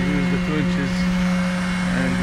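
Grout line pump and concrete vibrator running together with a steady drone, with a voice heard briefly in the first second.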